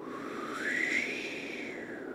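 Howling winter wind: one whistling tone that rises and then falls in pitch over a steady rushing hiss.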